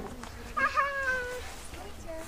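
A sheep bleating once: a single call of just under a second that falls slightly in pitch.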